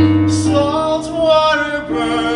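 A man singing a ballad with live piano accompaniment: a low piano chord fades in the first second while the voice holds wavering, sustained notes.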